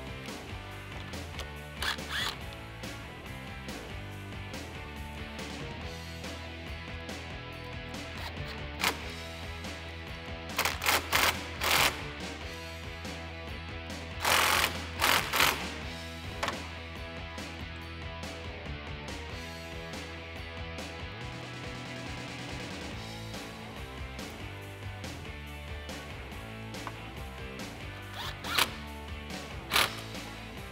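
Background music, with several short whirring bursts of a cordless drill-driver turning a 10 mm socket on the battery terminal nuts, the longest and loudest about halfway through.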